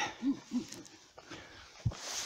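A person hurrying on foot with a handheld camera: two short breathy vocal sounds early on, then faint rustling and a single sharp thump just before the end.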